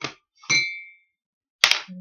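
Small hard objects being set down on a tabletop: a light click, then a clink that rings briefly about half a second in, and a sharp knock near the end.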